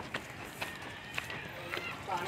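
Indistinct voices in the background, with a few sharp clicks or knocks.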